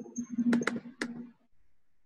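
Three sharp computer clicks, the last two about a third of a second apart, over a faint steady low hum that stops just after the last click.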